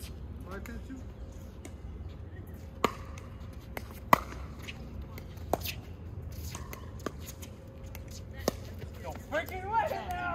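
Pickleball paddles hitting a plastic pickleball in a rally: about five sharp pops, roughly a second and a half apart. A player's voice comes in near the end.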